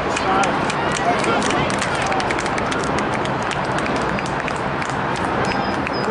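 Distant shouts and calls from soccer players and onlookers over a steady rushing outdoor noise, with scattered faint ticks throughout.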